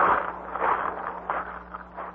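Radio-drama sound effect of footsteps crunching over shells and gravel on a shore, an uneven surge about every half second, loudest at the start, over a faint steady hum.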